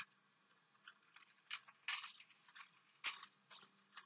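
Scallops sizzling in hot oil in a frying pan as they are laid in one at a time: a scattered series of faint, short crackles, loudest about two and three seconds in.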